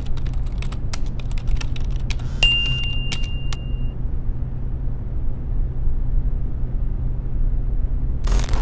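A steady low rumble with a scatter of sharp clicks over the first three and a half seconds; about two and a half seconds in, a single high, steady electronic beep lasting about a second and a half, a phone's incoming-message alert.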